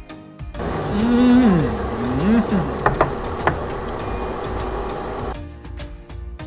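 A man's long hum of enjoyment while chewing ('mmm'), gliding up, holding and falling about a second in, then a shorter rise and fall. It sits over steady background music, with a couple of sharp clicks near the middle.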